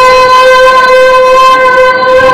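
A woman singing into a microphone, holding one long, steady note through the amplification.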